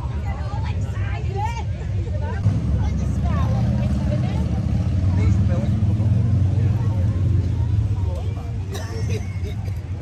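Background chatter of several people's voices over a low rumble that swells for a few seconds in the middle.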